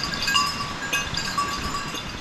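Small bells clinking irregularly, short ringing notes at a few fixed pitches.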